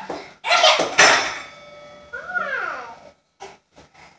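Short wordless vocal sounds: a loud, breathy cry about half a second in, then a whine falling in pitch around the middle, followed by a few soft clicks near the end.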